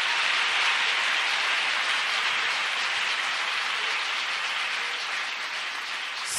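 Congregation applauding, a dense, even clapping that slowly dies down toward the end.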